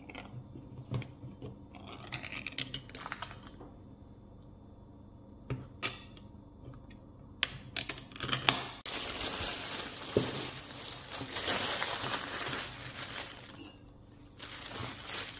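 A foil ring-pull lid being peeled back off a tin of fish, with small tearing scrapes and metallic clicks. From about nine seconds in, a plastic bag crinkles steadily for several seconds and then stops.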